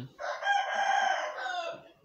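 A single long, high-pitched bird call of about a second and a half, dropping in pitch at its end, in the background.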